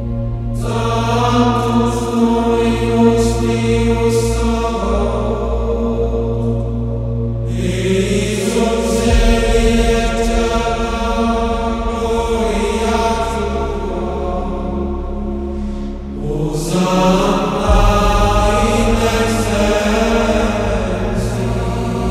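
Music of slow, chanted singing in long held phrases over a steady low drone, in the style of Gregorian chant. New phrases begin about half a second, seven and a half seconds and seventeen seconds in.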